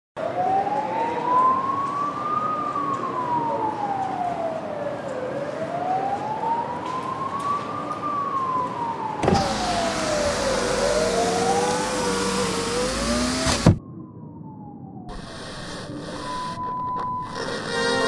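Emergency-vehicle siren wailing, its pitch rising and falling slowly in cycles of about five seconds. About nine seconds in, the sound turns noisier and a second, lower wail joins it; near fourteen seconds it cuts off suddenly with a click. A quieter passage follows, with a short steady beep.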